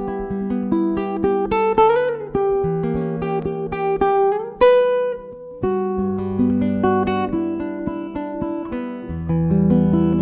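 Guitar and double bass duo playing a slow bossa nova: plucked guitar chords and melody notes, with deep bass notes coming in about six seconds in.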